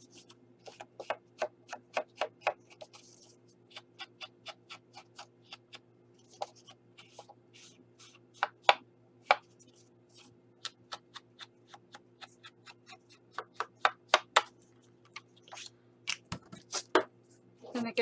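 Ink pad dabbed and rubbed along the edges of a card panel: a run of irregular light taps and short scuffs.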